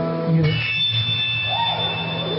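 Live music from the band on stage: a held chord stops about half a second in, and softer sustained tones follow.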